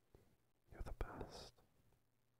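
A man's soft, close-mic whisper of about a second, with a few sharp lip or mouth clicks at its start.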